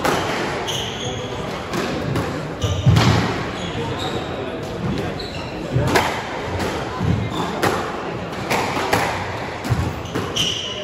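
A squash rally: the ball is struck by rackets and smacks off the walls about once a second, each hit echoing around the court, with short high squeaks of court shoes on the wooden floor between shots.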